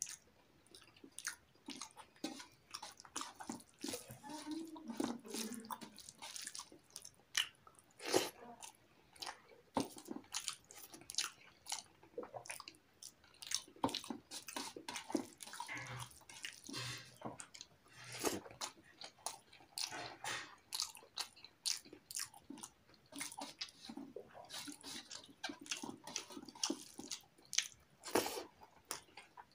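A person eating rice and curry by hand: fingers squishing and mixing rice on a metal plate, and wet chewing and lip smacking. The sound comes as a dense run of short clicks and smacks.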